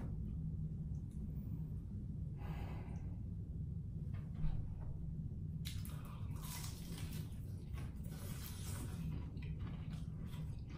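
Crispy fried chicken being bitten into and chewed close to the microphone: crunchy crackling bites start about halfway through and continue in quick irregular crackles, over a steady low hum. A short breath is heard a couple of seconds in.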